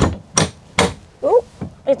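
Three sharp clicks, about half a second apart, as a Murphy bed's safety latch is undone and the folding panel knocks against its frame.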